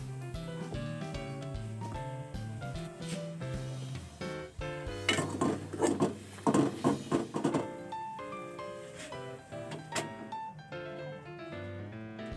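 Background music with a melody of short stepping notes throughout. About five seconds in, a couple of seconds of rapid clattering strokes, louder than the music: a metal fork stirring instant noodles in an aluminium pot.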